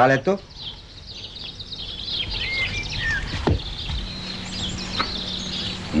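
Birds chirping and twittering in a dense chorus of rapid high calls, with a few short whistled notes in the middle and a couple of faint clicks.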